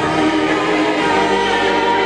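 A group of voices singing together in harmony, holding one long chord.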